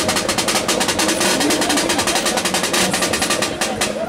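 Caixa, the samba snare drum, played solo with sticks in a fast, even stream of strokes that stops just before the end.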